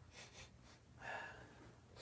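Near silence with a few faint sniffs and breaths from a man close to the microphone: two short sniffs near the start and a softer breath about a second in.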